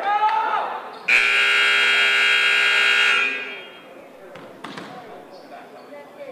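Gym scoreboard horn giving one long, loud blast of about two seconds as the countdown clock runs out, marking the end of a timed break in play. The blast starts about a second in and dies away in the hall's echo.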